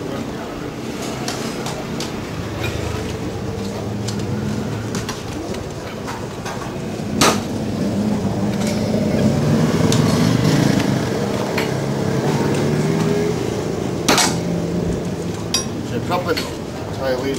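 Steel tyre levers and a metal tyre-changing stand clanking against a spoked motorcycle rim as a knobby tyre is levered over the bead, with small scattered clicks and two sharp metallic clanks, one about halfway through and one near the end.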